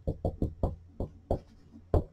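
Dry-erase marker tapping against a whiteboard as numbers are written: a quick, irregular series of light knocks, bunched together at first and sparser later.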